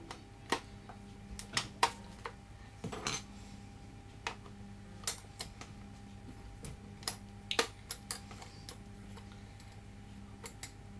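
Metal beaters clicking and knocking against a plastic electric hand whisk as they are fitted into its sockets, in a dozen or so short, irregular clicks. A faint steady hum runs underneath.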